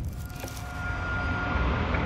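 Logo-sting sound effect: a low rumble with a click about half a second in and a thin, steady high tone that holds and then fades near the end.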